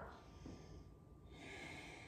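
A woman's faint breathing: two soft breaths, the second starting a little over a second in.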